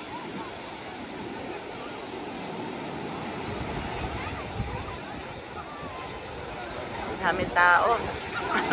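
Small ocean waves breaking and washing up on a sandy beach, a steady surf wash with faint voices of people in the water. Near the end a high-pitched voice shouts loudly for about half a second.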